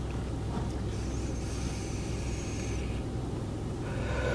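A long draw on a vape pod pen: a soft airy hiss with a faint thin whistle, from about a second in until around the three-second mark, over a steady low hum inside the car.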